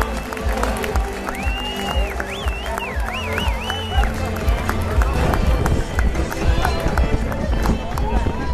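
Music over a stadium public-address system, its low bass steady, with the crowd's chatter and noise around it. A high wavering tone bends up and down for about three seconds, starting about a second in.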